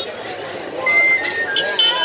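An outdoor crowd's voices with music over them. Several short, steady high tones stand out, and the sound gets louder in the second half.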